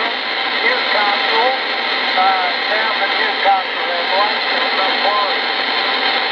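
A distant station's voice is coming through a CB radio's speaker over 11-metre skip. The voice is faint and half-buried in steady static hiss: a weak long-distance signal from Australia.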